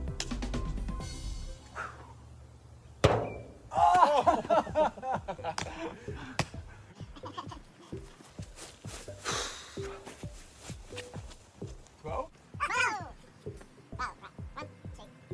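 A ball landing in a steel wheelbarrow with a single loud thunk about three seconds in, followed by excited shouting, over background music.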